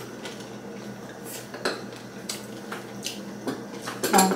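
Chopsticks clicking against bowls and plates while eating, a scatter of light, sharp clinks a fraction of a second apart.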